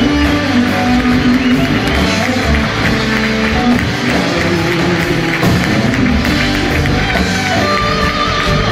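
Live rock band playing an instrumental passage, with electric guitars over drums, bass and keyboards.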